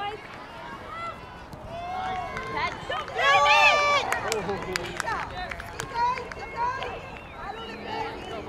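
People shouting across an outdoor soccer field during play. There is one loud, drawn-out shout about three seconds in, with shorter calls before and after it.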